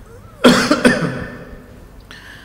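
A man coughs twice in quick succession, about half a second in, close to a desk microphone.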